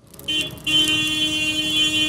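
A vehicle horn: a short blast, then a long steady held blast.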